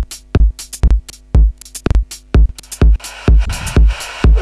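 Electronic dance track played from DJ software, with a steady kick drum about twice a second and hi-hat ticks between the kicks. About three seconds in, a sustained synth layer comes in over the beat.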